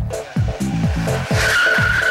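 Music with a steady, bass-heavy beat. In the second half comes a sustained high screech of tyres skidding on asphalt, as a mountainboard slides out under its rider.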